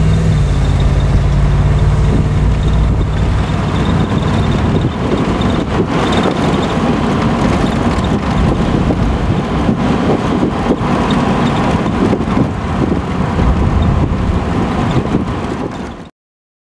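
A 1964 Corvette's 327 cubic-inch V8 pulling the car down the road under throttle through its Powerglide automatic, heard from the driver's seat. A steady engine note in the first couple of seconds gives way to a broad, even rush of engine, road and wind noise, which cuts off at the end.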